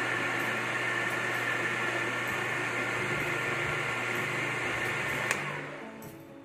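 Countertop electric blender running steadily, whipping cream and condensed milk toward stiff peaks. It is switched off about five seconds in and its motor winds down.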